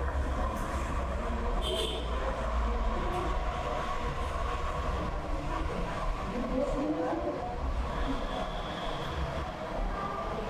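Steady low rumble and background noise of the room, with no voice, picked up while the lecture's microphone has cut out.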